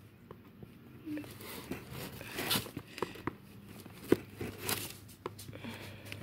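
Scissors cutting through the edge of a cardboard shipping box: an irregular run of small snips and crunches, with one louder snap a little after four seconds.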